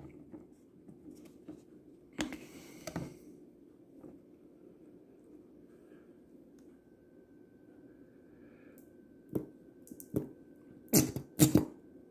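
A squeeze bottle of thick sauce being handled and squeezed onto fried chicken: a few short squirts and clicks, the loudest cluster near the end.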